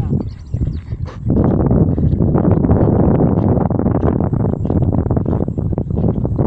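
Wind buffeting the microphone: a loud, gusty low rumble that starts about a second in and keeps going.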